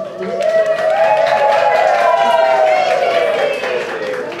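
Audience clapping in a small round of applause, over a long drawn-out vocal call from the crowd that rises and then slowly falls in pitch over about three seconds.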